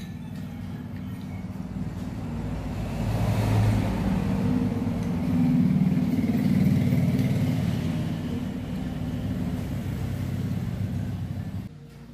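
Low engine rumble of a motor vehicle going by, swelling over a few seconds and then easing off, cut off sharply near the end.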